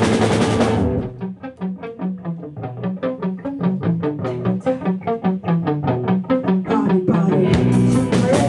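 Live rock band playing loud; about a second in it drops away to electric guitar alone picking a fast repeating riff of single notes, about six a second. The full band comes crashing back in near the end.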